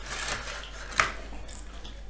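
Eating and handling sounds at a dinner table: rustling and scraping with one sharp crack about a second in, as crisp papad-like flatbread is handled.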